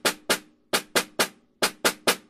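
Concert snare drum struck with wooden sticks in single strokes, grouped in threes with a short gap after each group: the 'one-e-and' rhythm that a five-stroke roll is built on, played right-hand lead (RLR). A faint ring from the drum carries under the strokes.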